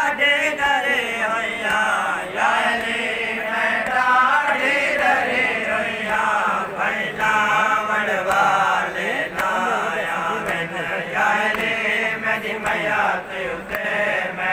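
A group of men chanting a devotional song together. The voices run on continuously with short breaks between phrases.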